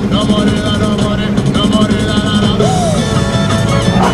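Music with a steady beat, playing on the taxi's radio.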